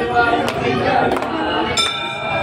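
Metal temple bell struck repeatedly at a steady beat, about every two-thirds of a second, over a crowd's voices; a strike near the end rings on.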